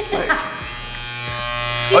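Electric hair clippers running with a steady buzz that slowly grows louder, cutting a man's hair.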